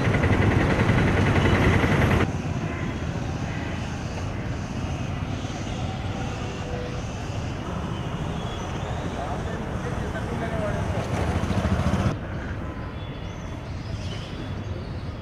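Outdoor background noise: a steady rush with faint, indistinct voices in it. The noise drops in level about two seconds in and again near the end.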